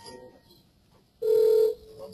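A single electronic beep, one steady tone lasting about half a second, starting a little past a second in.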